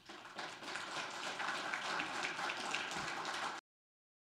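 Audience applauding, swelling in the first half second, then cut off abruptly about three and a half seconds in.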